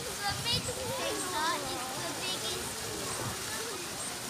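Distant voices of people at the enclosure, with several short, high chirping calls and a faint trickle of running water.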